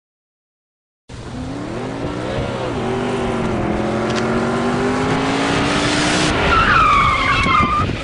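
Motorbike engines starting up about a second in, revving briefly, then running steadily as the bikes ride along. A high, falling squeal comes near the end.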